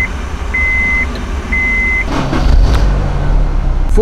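A 2003 Honda S2000's warning chime beeps three times, about once a second, with the ignition switched on. About two seconds in, its 2.0-litre four-cylinder engine starts and settles into a steady idle.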